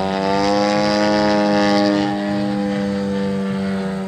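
DLE 111 twin-cylinder two-stroke petrol engine of a large RC aerobatic plane, droning steadily in the air during a knife-edge pass. Its pitch swells slightly and then eases off.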